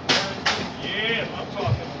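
Two sharp slaps of kicks striking a handheld kick pad, a little under half a second apart, the first the louder, followed by a dull thud near the end.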